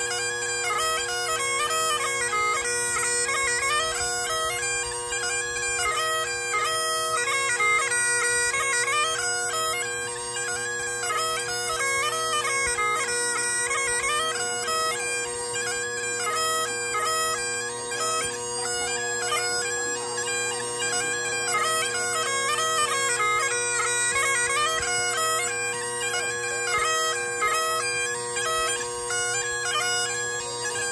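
Great Highland bagpipe playing a traditional hornpipe: the chanter carries a quick, lilting melody over the steady drones.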